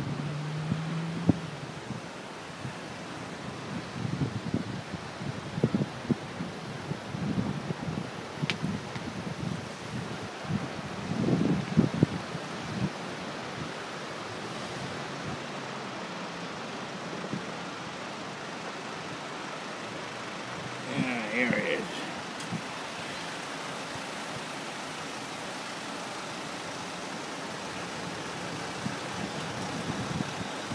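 Steady outdoor background hiss, with wind buffeting the microphone in short low bursts through the first half.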